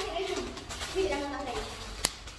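Young girls' voices, vocalising in drawn-out pitched syllables that slide up and down, without clear words.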